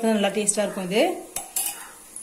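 A woman's voice for about the first second, then a single metal clink of a utensil against the iron kadai of hot oil, with a short hiss just after.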